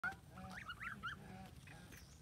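Geese calling: a short honk right at the start, then a few quick, high chirping calls that rise and fall in pitch.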